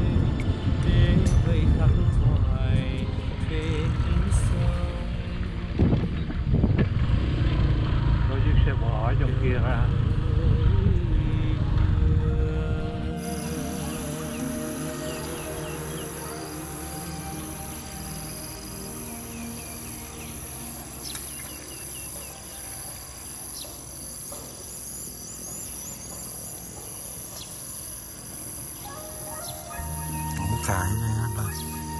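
Wind buffeting the microphone of a camera riding on a moving motorbike, a loud low rumble, for about the first 13 seconds. Then it cuts suddenly to a much quieter field where insects keep up a steady high-pitched drone.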